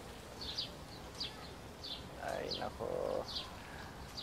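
Small birds chirping in short, high notes repeated about every half second to a second. About two seconds in there is a lower, muffled sound lasting about a second.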